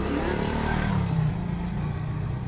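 A motor vehicle passing by: a low rumble with a rush of noise that swells about half a second in and eases off after a second.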